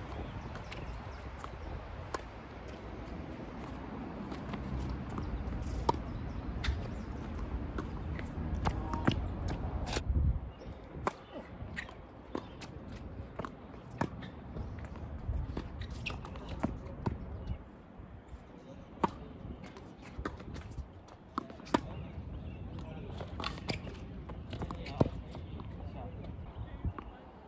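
Tennis rally on an outdoor hard court: sharp racket strikes and ball bounces every second or two, with footsteps on the court. A low background rumble fades out about ten seconds in.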